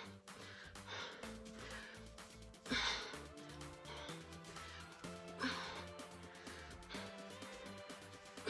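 Background music with a steady bass beat, over which a woman exercising gives two loud, sharp exhaled breaths, about three seconds in and again about five and a half seconds in, in time with her squat reps.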